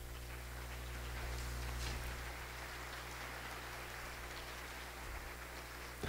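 Audience applauding in a hall, fairly faint, swelling over the first two seconds and then slowly dying away.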